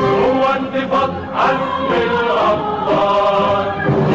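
A choir singing an Arabic patriotic song over instrumental backing, with long held notes.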